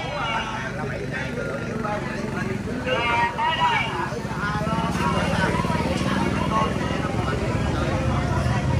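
Background conversation among several people seated nearby, over a steady low engine hum like road traffic that gets a little louder about halfway through.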